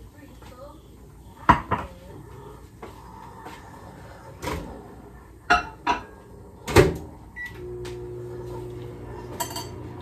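Several sharp knocks and clunks of a plate and a microwave oven door being opened and shut, the loudest just before the three-quarter mark, then a short keypad beep and the microwave oven starting up with a steady hum to reheat the food.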